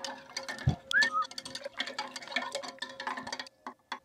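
A metal spatula stirring liquid in a glass beaker, with rapid light clinks and ticks against the glass and a brief squeak about a second in. The stirring stops shortly before the end.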